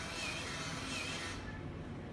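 Small robot-kit motor spinning a mop head on a tabletop: a steady whirring hiss that cuts off about one and a half seconds in as the mop stops.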